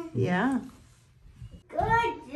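Speech only: a short spoken "yeah", a lull of about a second, then voices again near the end.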